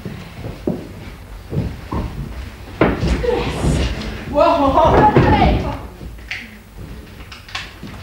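Thuds and slams of wrestlers' bodies hitting the boards of a wrestling ring, several knocks in the first three seconds with the heaviest slam near three seconds in. A loud shout rises over it about halfway through, followed by a few lighter knocks.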